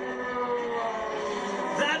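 Several IndyCar twin-turbo V6 engines running at high revs as the cars go by, heard as a chord of whining tones that slowly fall in pitch.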